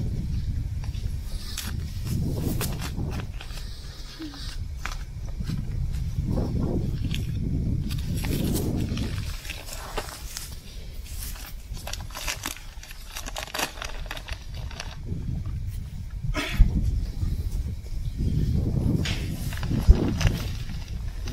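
Plastic nursery tube being cut and peeled off a fir sapling's root ball: scattered crackles and sharp clicks over a steady low rumble.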